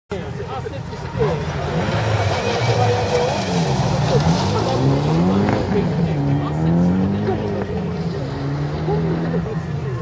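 A dirt-trial rally car's engine revving hard as it launches from the start, about a second in, and accelerates away on gravel. The pitch climbs and drops several times as it shifts up through the gears.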